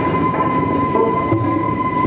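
Live experimental electronic noise music: a steady high whistling tone held over a loud, dense drone, with a low chugging pulse repeating about once a second.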